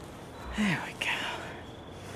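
A person whispering briefly, two quick breathy syllables about half a second in, the first falling in pitch.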